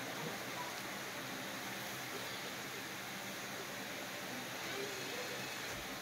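Steady faint hiss of room tone, with no distinct sound event.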